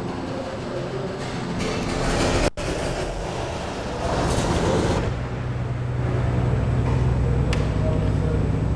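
Steady rumbling background noise with a low hum, cut off sharply for a moment about two and a half seconds in and growing louder from about four seconds on.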